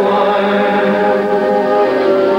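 Choral music with voices holding long, sustained chords at a steady volume.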